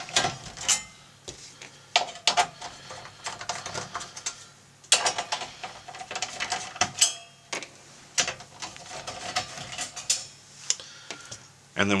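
Small screws and a 7/32-inch nut driver clicking and clinking against the stamped-metal back cover of a Corvette digital gauge cluster as the cover screws are taken out and set aside: irregular light clicks and knocks, with a few sharper ones about five and seven seconds in.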